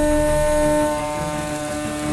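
CNC mill's 1-inch two-flute end mill roughing a block of aluminum, a steady pitched cutting whine over a low machine rumble, dipping slightly in level in the second half.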